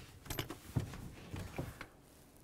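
A few light, separate clicks and knocks from handling and movement inside a pickup truck's cab while the brake pedal is pressed.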